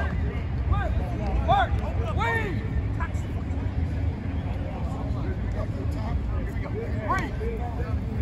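Shouted calls from coaches and players carrying across an open practice field, in short bursts, over a steady low wind rumble on the microphone.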